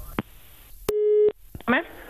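A click, then one short telephone line tone, a single steady low beep under half a second long, cut off by another click.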